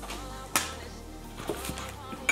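Soft background music, with a sharp click about half a second in and a lighter one about a second and a half in as gloved hands break apart a crab leg's shell.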